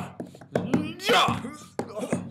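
Fight-scene hits: three or four sharp, slap-like punch impacts, with wordless shouts and grunts between them. The loudest cry comes about a second in.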